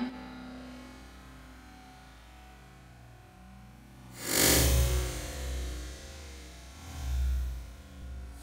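Slowed-down slow-motion audio of a kitchen knife being swung through a whole pineapple. A low hum gives way to a deep, drawn-out whoosh about four seconds in as the blade cuts through, then a second, lower swell near the end.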